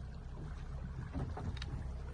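Water sloshing and splashing against the side of a small boat over a steady low rumble, with a few sharper splashes about a second and a half in.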